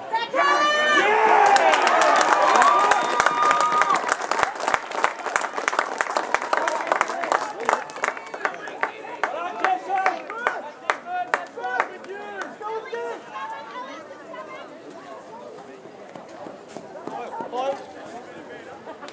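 Small crowd of spectators cheering and shouting after a goal in an Australian rules football match, with a burst of clapping. It rises suddenly about half a second in, peaks over the next few seconds, then dies down to chatter over the last several seconds.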